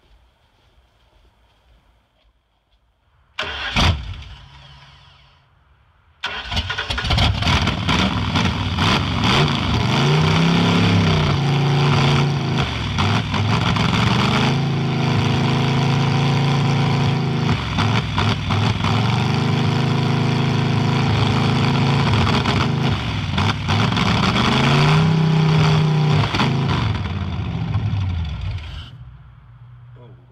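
Ford 460 V8 with open headers, hard to start after sitting a long time: a short cough about three and a half seconds in that dies, then it catches about six seconds in and runs loudly. The revs are raised and let fall a few times, and the engine stops just before the end. Its mechanical fuel pump is only now delivering gas steadily.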